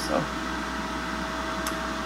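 DeLonghi Rapid Crisp air fryer running empty while it heats up: a steady fan hum with a thin, constant whine.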